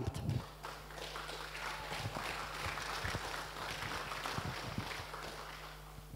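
Audience applauding, a dense patter of clapping that dies down near the end.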